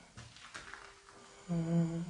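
A man's low mumbling hum, held on one pitch, starting about one and a half seconds in.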